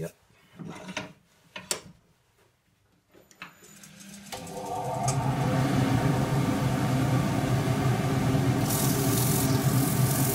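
Wood lathe starting up after a few light handling knocks, its motor running up to speed over about two seconds and then humming steadily. Near the end sandpaper is pressed against the spinning wooden bowl, adding a rasping hiss.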